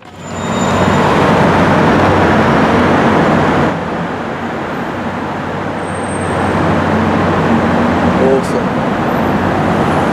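Steady car engine and road noise in a road tunnel, with a low hum running under it; it drops a little in level about a third of the way in, then builds again.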